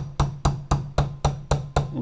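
Hammer tapping a 1/16-inch steel pin punch in quick, even strikes, about four a second, driving the forward assist spring pin into an AR-15 upper receiver.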